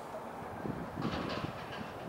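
Low, rumbling background noise of an outdoor athletics stadium, swelling for about a second in the middle.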